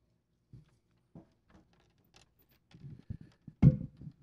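Faint, scattered knocks and handling noises picked up by a microphone during a mic check, with one louder, brief thump about three and a half seconds in.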